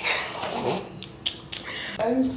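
A woman's breathy, unworded laughter, with a short sharp click about a second and a quarter in.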